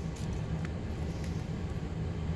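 A steady low hum from a running machine or motor, with one faint click about a third of the way in.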